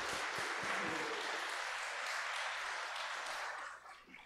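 A congregation applauding, steady clapping that dies away near the end.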